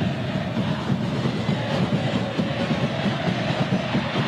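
Steady noise of a large stadium crowd at a football match, a dense continuous din without distinct shouts or a beat.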